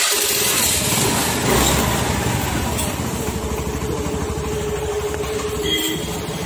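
Honda Activa 4G scooter's single-cylinder four-stroke engine running steadily at idle, a little louder for a moment about a second and a half in.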